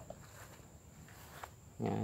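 Mostly faint background with small rustles and a thin steady high-pitched tone, then a man's low, drawn-out "ya" near the end.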